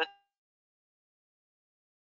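The last syllable of a narrator's voice ends in the first fraction of a second, followed by dead silence.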